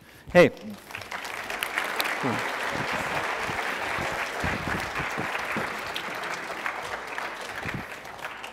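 A roomful of people applauding, a steady clapping that starts about a second in and dies away near the end.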